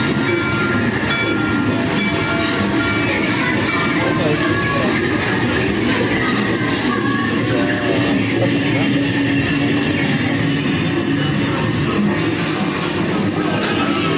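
Steady, loud din of a theme-park ride's boarding station, with background music faintly under it and a brief hiss near the end.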